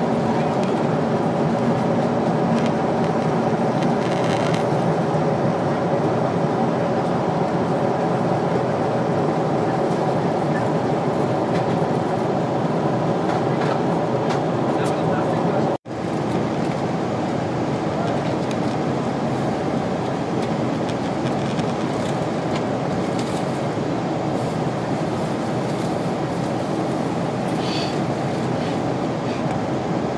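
Steady cabin noise inside a Boeing 747-8I airliner in descent: the drone of its GEnx turbofan engines and the airflow rushing past the fuselage, with a few faint steady tones in it. The sound breaks off for an instant about halfway through.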